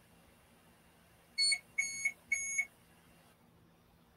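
Electronic beeping of unknown origin: three high beeps about a second and a half in, the first short and the next two a little longer.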